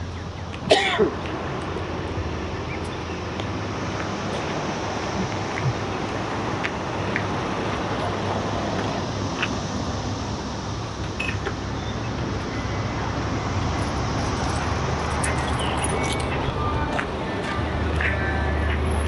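Steady roadside traffic hum and outdoor noise, with a single cough about a second in. A vehicle's engine grows louder near the end.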